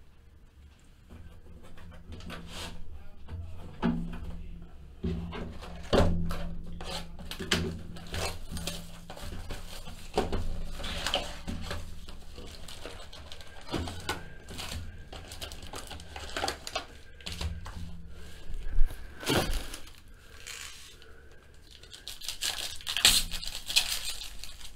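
Cardboard trading-card hobby box being opened and its foil packs handled, with scattered knocks and scrapes. Near the end a foil card pack crinkles as it is torn open.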